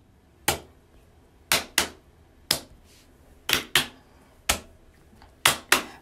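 Sparse percussion beat of sharp, clap-like hits on a steady pulse: a single hit, then a quick double hit, alternating about once a second, with near quiet between the hits. It is the opening beat of an intro song.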